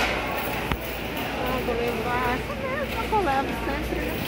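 Supermarket aisle ambience: a steady low hum with faint, indistinct voices in the second half and one small click near the start.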